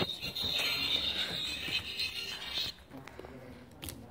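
Tinny electronic melody from a musical greeting card's sound chip and small speaker, cutting off suddenly after nearly three seconds. A single click sounds near the end.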